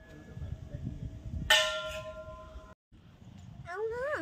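A temple bell struck once about a second and a half in, ringing on in several steady tones until it cuts off abruptly just over a second later.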